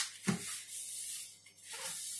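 A cloth rubbing over a plastic cutting board as it is wiped clean, with a light knock just after the start.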